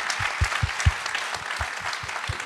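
Audience applauding, with a few dull low thumps mixed in.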